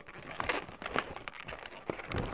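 Inflated latex twisting balloons (260s) being handled, rubbing against each other in short, irregular crinkling strokes.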